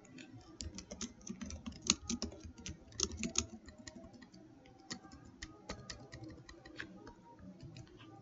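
Typing on a computer keyboard: a quick run of key clicks, densest in the first few seconds and thinning out toward the end.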